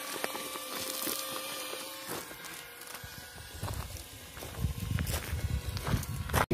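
A drone hovering overhead, a steady hum that fades out about two seconds in. Then wind buffets the microphone with a low rumble, with footsteps on gravel.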